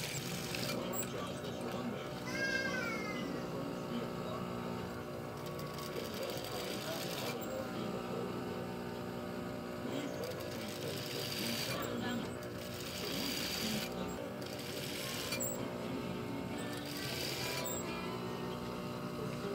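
Industrial sewing machine humming, with stitching in short runs that come and go, over background music and voices.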